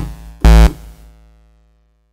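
Low, buzzy synthesizer tone from Softube Modular: sawtooth and square waves from two Doepfer A-110 oscillators, mixed and shaped by an envelope-controlled amplifier, played as short gated notes. One note cuts off at the start, a second short note sounds about half a second in, and its tail fades away to silence.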